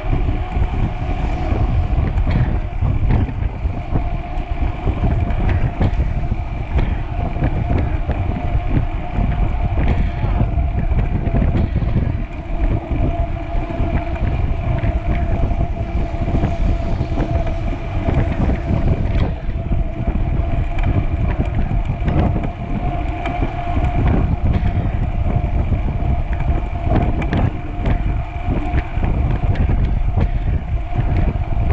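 Wind rushing and buffeting over the microphone of a bike-mounted camera at about 33 km/h, with a steady hum from the knobby mountain-bike tyres rolling on pavement.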